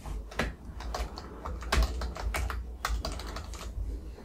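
Typing on a computer keyboard: an irregular run of quick key clicks as a short phrase is typed.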